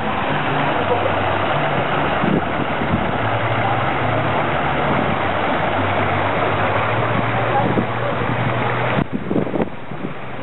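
Fountain jets splashing steadily, with the chatter of a crowd around it.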